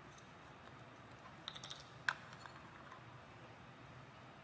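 Light clicks from small labware being handled: a quick cluster of soft clicks about one and a half seconds in, then one sharper click about two seconds in, over quiet room tone.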